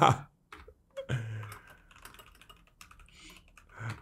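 Typing on a computer keyboard: a run of quick, uneven key clicks, with a brief low murmur of a voice about a second in.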